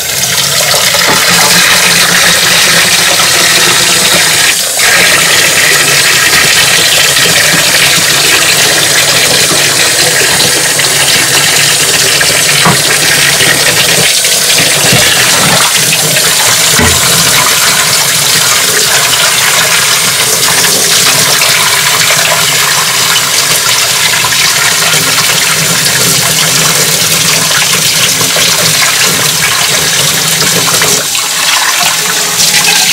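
Tap running hard into a plastic utility sink, the stream splashing onto a plastic pet food bowl as it is scrubbed under the water. A few light knocks come as the bowl is handled.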